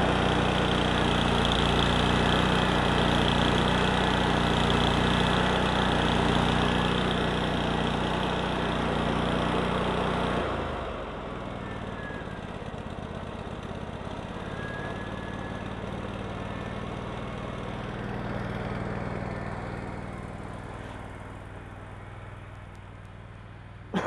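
Carbureted gasoline engine of a Lincoln Electric Ranger GXT engine-driven welder running just after starting. About ten seconds in, its speed and level drop abruptly and it settles to a slower, quieter idle.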